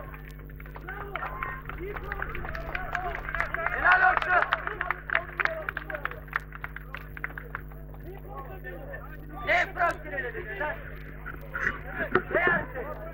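Voices of players calling out across the football pitch during a stoppage, loudest about four seconds in and again briefly near ten seconds, over a steady low hum.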